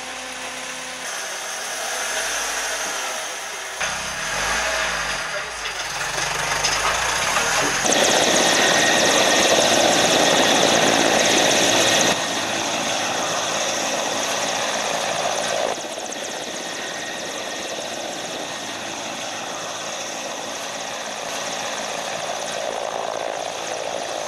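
Military transport helicopters running, a steady roar of turbines and rotors that jumps in level several times and is loudest for a few seconds in the middle. In the first seconds a lower engine hum sits underneath.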